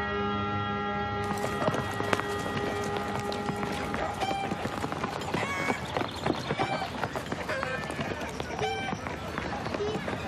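Held music chords fade out about a second in. Busy outdoor village ambience follows, with children's voices calling and chanting and many short knocks and clatter.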